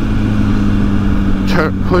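2006 Honda CBR1000RR's inline-four engine running at a steady cruise through its Jardine exhaust, the pitch holding level, under the rumble of wind at riding speed.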